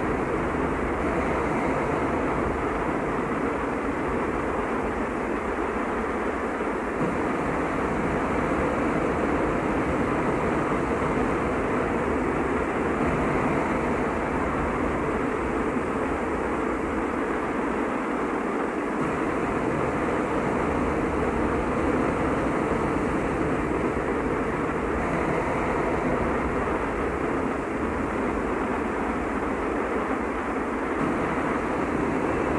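Death-industrial drone music: a dense, steady noise drone that barely changes, dull in the highs as from a cassette master tape.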